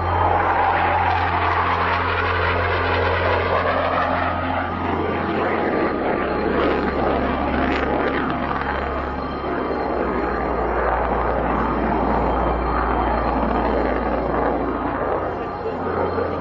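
North American XB-70 Valkyrie jet bomber in flight: a steady rushing jet-engine noise, over a low steady hum that steps down in pitch about five and ten seconds in.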